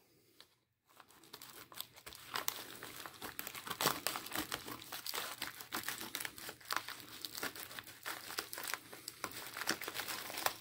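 A padded plastic mailing envelope crinkling and crackling in irregular bursts as hands handle it and work at one end to open it. The sound starts after about a second of silence.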